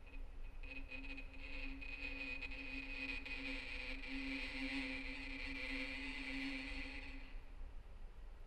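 Solo violin playing very softly: one held note with a breathy, hissing bow sound above it that swells and then stops about seven seconds in. This is one of the contemporary playing techniques the étude is written around.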